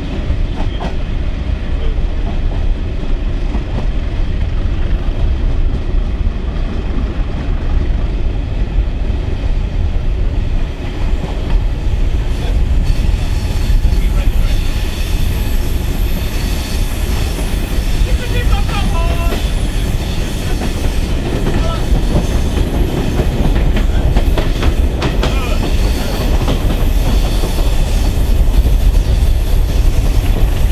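Passenger coach of a diesel-hauled train running, heard from an open window: a steady rumble with wheels clicking over the rail joints. About two-thirds of the way through, and again a little later, the wheels squeal briefly on a curve.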